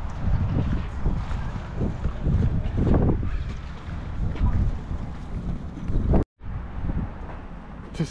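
Wind buffeting the microphone in uneven gusts: a deep, rumbling roar that swells and fades, with a sudden brief dropout to silence about six seconds in.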